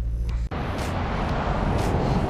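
Steady low hum of a car idling, heard from inside the cabin. About half a second in it cuts off abruptly and gives way to a steady rush of wind and ocean surf.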